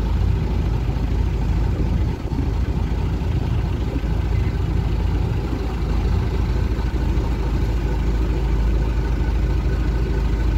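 Small fishing boat's engine running steadily with a low rumble.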